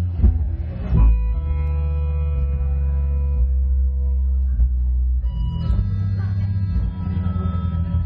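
Live rock band playing amplified: bass guitar and electric guitars over drums, with keyboard on stage. A loud hit comes about a second in, followed by a chord held for a few seconds before the band plays on.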